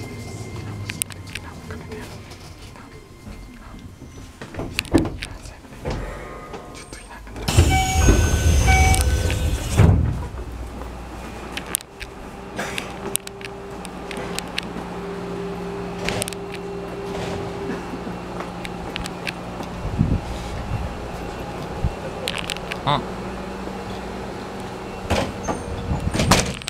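Keisei 3000-series electric train stopping at a station platform. A loud hiss of air from about seven and a half to ten seconds in, then the stationary train's steady electrical hum, with scattered clicks and knocks around it.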